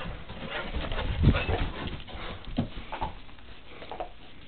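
Dogs playing over a tennis ball, with a low dog vocal sound about a second in, followed by a few soft thumps and scuffles.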